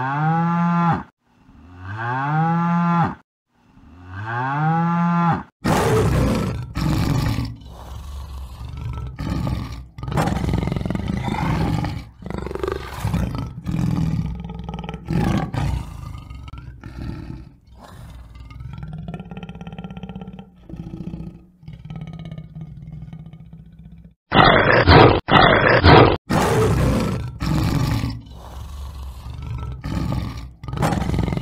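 Three drawn-out cattle moos, each rising then falling in pitch. From about five seconds in, a tiger roars and growls repeatedly, with short breaks between the calls.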